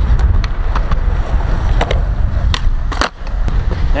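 Skateboard wheels rolling on concrete with a steady rumble, broken by several sharp clacks of the board between about two and three seconds in as a kickflip is tried off a bank.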